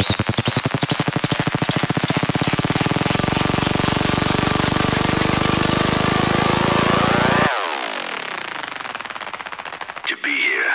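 Progressive psytrance build-up: a rapid repeated hit speeds up into a continuous buzz under a rising sweep. It cuts off suddenly about seven and a half seconds in, leaving a falling, fading tail before the drop.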